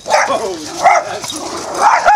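Boxer dogs barking during rough play in a chase, three loud barks: one at the start, one about a second in, and one near the end.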